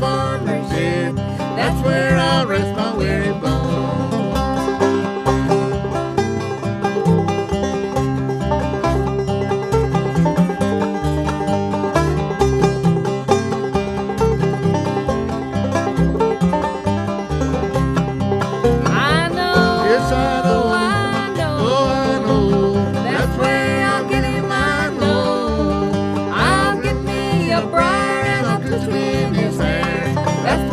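Instrumental break of an old-time string-band tune: fast banjo and acoustic guitar picking over a steady bass line, with sliding notes coming in about two-thirds of the way through.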